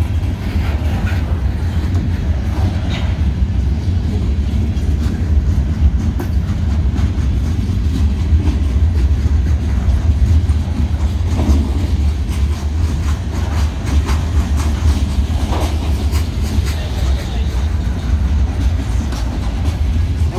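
Loaded freight cars of a CSX train rolling past at close range: a steady low rumble of steel wheels on rail, with repeated wheel clicks throughout.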